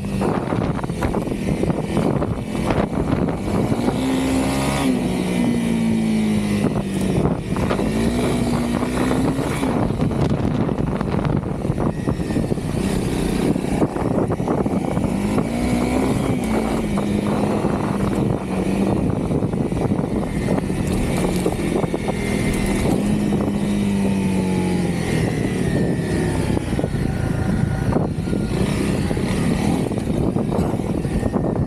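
Honda CRF300L single-cylinder four-stroke engine running under way. Its pitch rises and falls several times with throttle changes, with wind rushing over the microphone.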